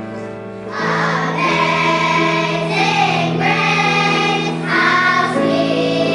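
A children's choir begins singing in unison about a second in, over a sustained keyboard accompaniment. The voices carry on in phrases with short breaks between them.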